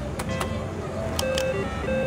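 Double Diamond reel slot machine starting a spin: a couple of sharp clicks early on as the spin is pressed, then a run of short electronic beeping tones as the reels turn, over a steady background hum of other machines.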